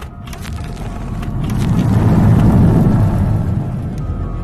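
Low rumbling swell of film-trailer sound design that builds to a peak partway through and then eases, over a steady drone with a few sharp clicks.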